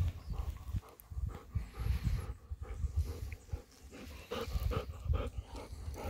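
Golden retriever panting while walking, over repeated low thumps.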